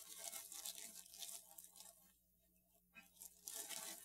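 Faint crinkling of a clear plastic bag of potting soil and the gritty crunch of soil as hands scoop it out, with a short pause a little past halfway.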